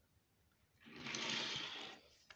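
Die-cast toy cars being handled and moved on a plastic surface: a soft rushing scrape a little over a second long. It starts about a second in, then swells and fades.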